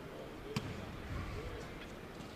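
Faint gym ambience with a basketball bouncing on the court floor, the clearest bounce about half a second in, as the free-throw shooter readies his second attempt.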